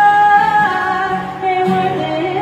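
A woman singing a long held note, then moving to a lower one near the end, over strummed acoustic guitar in a live country song.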